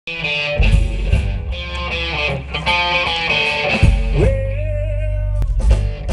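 A live country-rock band playing, with electric guitar, bass guitar and drums, heard bass-heavy from the front row. About four seconds in, a note slides up and is held for over a second.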